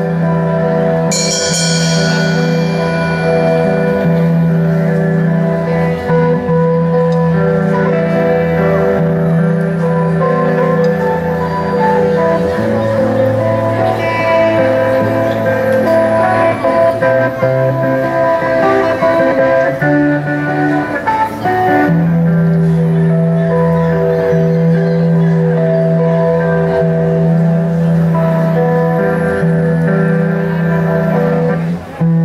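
A live band opens with an instrumental introduction on guitars. Long held chords change about twelve seconds in and return about ten seconds later, with a bright shimmering cymbal-like stroke near the start.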